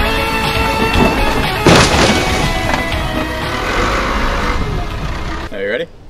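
Background music with steady held notes, broken about two seconds in by a single loud crash: a car dropped from a backhoe's loader arms hitting the ground. The music cuts off near the end.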